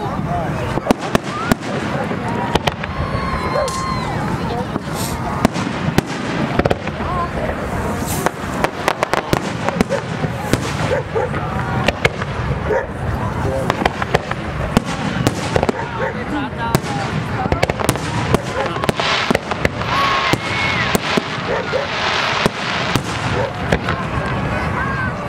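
Aerial firework shells launching and bursting overhead: many sharp bangs at irregular intervals, coming thick and fast through the display.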